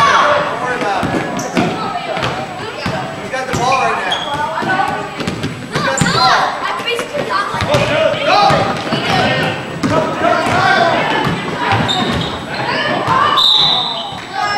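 Basketball bouncing on a hardwood gym floor during play, with many short knocks over constant talking and shouting voices that echo around the hall.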